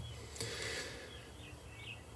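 Quiet outdoor ambience with a few faint, short bird chirps in the second half.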